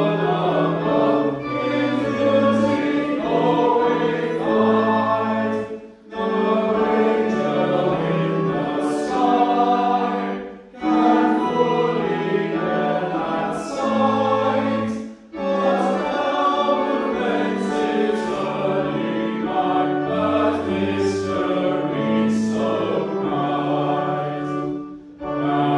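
Church congregation singing a hymn together, sustained notes in phrases with a short break for breath between lines every four to five seconds.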